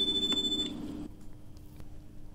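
Electronic beep tone from the exam recording played on a laptop. It holds steady for the first half-second or so, then fades away. It is the cue for the candidate to begin interpreting the segment just heard.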